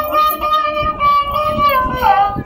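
Background music: a high singing voice holds one long note, sliding down to a new note near the end.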